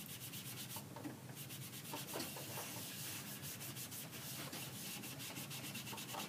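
A sponge loaded with ink being rubbed quickly back and forth over designer paper: a faint, scratchy rubbing in rapid, even strokes as the ink is smeared onto the paper.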